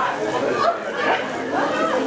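Audience chatter: several people talking over one another in a room, no single voice standing out.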